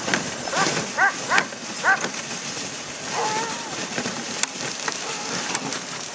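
Dogs barking in four short yips between about half a second and two seconds in, then one longer drawn-out call a little after three seconds, over the steady hiss of a dog sled running on snow.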